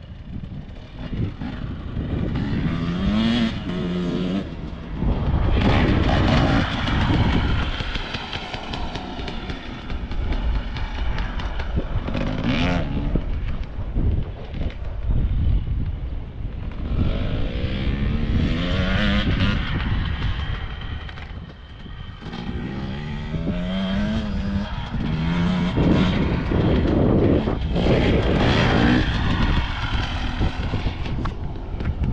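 Motocross dirt bikes running on the track, engines revving up in repeated rising climbs several times as riders accelerate and shift gears, with a heavy low rumble underneath.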